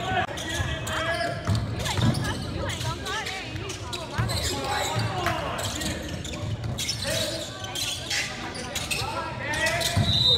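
Basketball game on a hardwood gym floor: the ball bouncing, sneakers squeaking and players calling out, all echoing in the gym.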